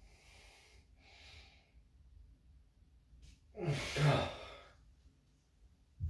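A man breathing hard from the effort of pull-ups: two soft breaths, then one loud, voiced sigh about four seconds in.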